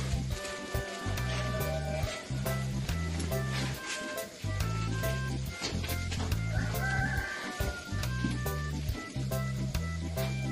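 Background music with a steady, repeating bass beat and light high percussion.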